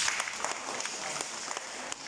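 Applause from a small audience: many separate hand claps, fading slightly toward the end.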